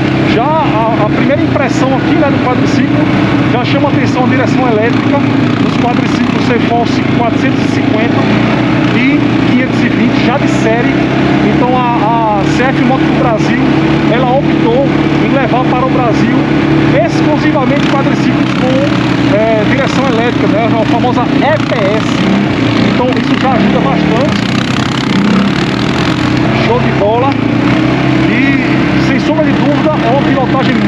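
CFMoto CForce 520 ATV's single-cylinder engine running steadily as the quad is ridden along a dirt trail, heard from the rider's seat.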